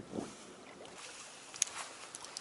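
Light water splashing and dripping close by, with one sharp click about one and a half seconds in.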